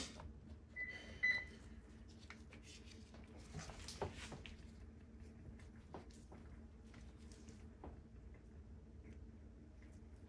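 Faint scrapes and light knocks of a palette knife being handled and drawn through wet paint on a board. Two short high beeps about a second in are the loudest sound.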